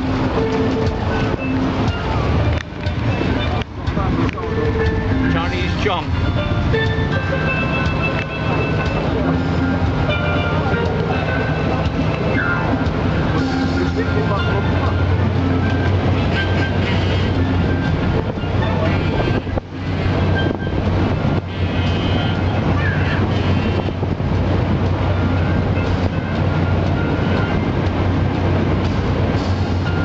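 Amphibious duck-tour vehicle's engine running steadily on the water, a low drone under loud music and voices.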